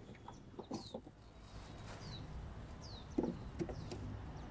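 Chickens clucking faintly in the background, with a few short, falling chirps spread through and a cluster of low clucks a little after three seconds in.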